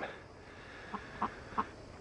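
Quiet outdoor background with three faint, short calls from about a second in, roughly a third of a second apart.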